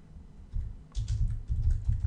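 Typing on a computer keyboard: a quick, irregular run of keystrokes, most of them in the second half.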